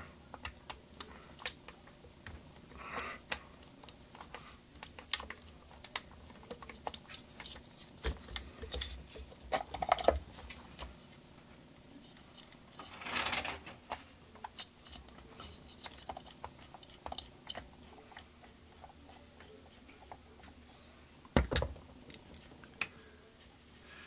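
Scattered light clicks, taps and small metallic clatter from hands working a screw loose and handling parts of a partly dismantled Robinair vacuum pump. There is a brief rustle about halfway through and a sharper knock near the end.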